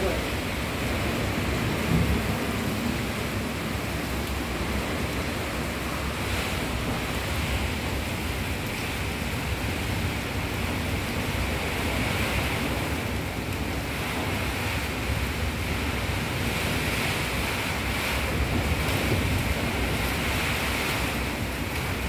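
Heavy rain and strong wind of a storm: a steady rushing hiss that swells a little in the middle and again near the end.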